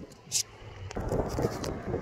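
Wind rumbling on a phone's microphone, picking up about a second in, with clicks and rustles from the phone being handled and swung around.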